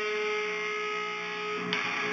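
Electric guitar letting a held note ring, then a new note or chord is picked sharply near the end.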